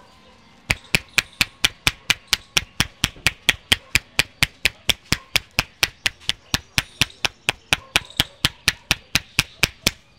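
Rapid percussive head massage: a barber's cupped hands slapping the scalp in a steady run of sharp claps, about four a second, that starts under a second in and stops just before the end.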